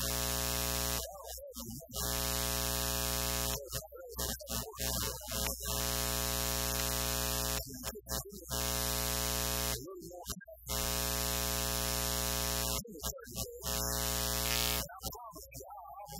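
A loud electrical buzz, a steady tone with many overtones, cutting in and out in blocks of one to two seconds and drowning a man's voice, which is heard speaking in the gaps between. It is an audio fault in the sermon's sound feed or recording.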